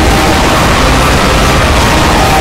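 A loud, steady wall of noise from many clip soundtracks played over each other at once, a cacophony with a few faint held tones showing through.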